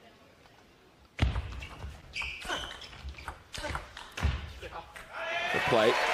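Sharp clicks of a table tennis ball between points, with two heavy thumps about one second and about four seconds in, in a large hall. Near the end a person shouts loudly.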